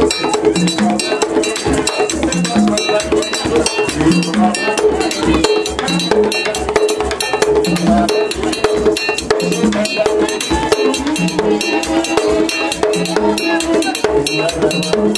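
Haitian Vodou ceremonial percussion: a struck iron bell like a cowbell keeps a fast, steady beat over drums, with a low drum figure recurring every second or two.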